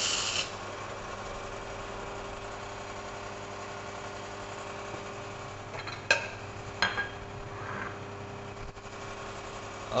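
Espresso machine running with a steady low hum while the shot is pulled. A loud rushing noise cuts off just after the start, and two sharp clinks come about six and seven seconds in.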